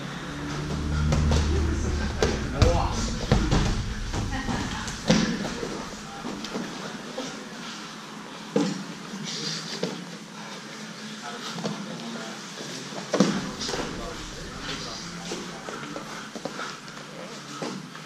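Grapplers scrambling on a padded mat: dull thumps and scuffs as bodies hit and shift on it, the loudest a few seconds in and again past the middle, under indistinct voices of onlookers calling out.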